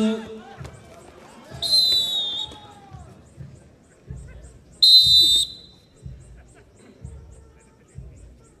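Referee's whistle, two blasts about three seconds apart, the first just under a second long and the second shorter and louder, each one clear high note. A faint low thump repeats about once a second behind.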